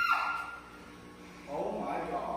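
A woman's high-pitched squeal tailing off in the first half second, then a short burst of voice about a second and a half in.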